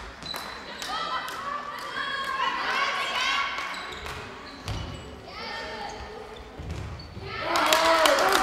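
A handball bouncing and thudding on a sports-hall floor as players dribble and pass, with players shouting across the echoing hall. Near the end the shouting gets louder as the attack reaches the goal.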